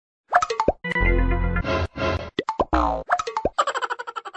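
Cartoon-style comedy sound effects laid over the footage: a string of short sliding pops and springy glides, with a longer buzzy tone about a second in and a quick run of ticks near the end.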